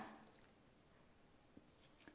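Near silence: room tone, with a couple of faint ticks near the end.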